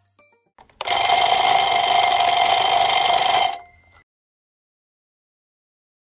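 Loud timer alarm ringing steadily for about three seconds, starting about a second in and then cutting off: the signal that the countdown has run out.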